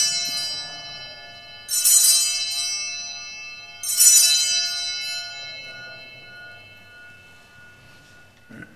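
Altar bells rung three times, about two seconds apart, each ring sounding and slowly dying away: the signal of the elevation of the consecrated host at the consecration of the Mass.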